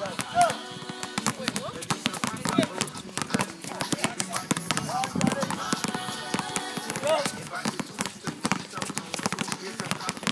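Several basketballs being dribbled at once on an outdoor hard court: a fast, irregular patter of overlapping bounces, with voices calling in the background.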